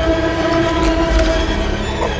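Horror film score: a held horn-like tone with overtones over a low rumble, ending just before the two-second mark.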